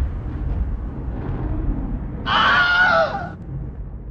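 Logo-intro sound effects: a deep low rumble fading slowly after a sudden boom, then about two seconds in a shrill, wavering, voice-like cry lasting about a second that drops in pitch at its end.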